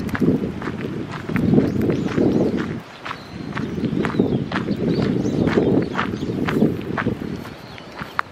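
Footsteps crunching on a gravel path at a walking pace, with a short lull just before three seconds in.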